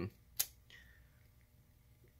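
A single sharp click about half a second in, from handling the opened laptop's internals, against a quiet room.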